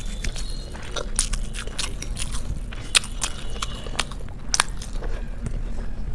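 Close-miked mouth sounds of a person chewing a mouthful of biryani: wet chewing and lip smacks, broken by several sharp crunchy clicks.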